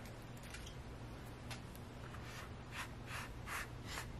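Fingers raking through silica gel crystals in a plastic tray: faint gritty scratching and rustling, with several short rustles, most of them in the second half.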